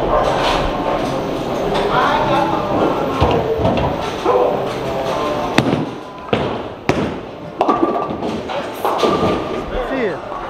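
A bowling ball lands on the wooden lane with a sharp thud a little past halfway through and rolls off, over background music and voices in a bowling alley.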